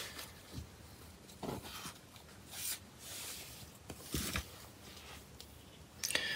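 Quiet room with a few faint, scattered rustles and soft clicks, the loudest about a second and a half in and again near the middle of the stretch.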